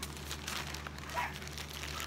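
Black plastic bag wrapping being handled and pulled open, crinkling and rustling in irregular small bursts.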